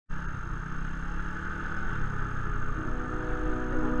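Motorbike running along at a steady road speed, a continuous engine and road rumble. Organ-like background music fades in over it about two-thirds of the way through.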